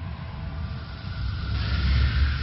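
A deep low rumble with a hiss swelling up over its last half second, like a cinematic whoosh sound effect.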